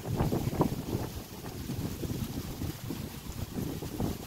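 Wind buffeting the microphone in uneven gusts, a low rumbling rush that surges and dips.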